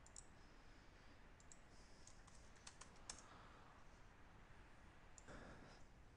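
Near silence broken by faint computer keyboard key clicks, a few at a time, clustered about two to three seconds in.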